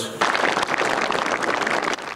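A group applauding: dense, even clapping that starts abruptly just after the beginning and stops shortly before the end.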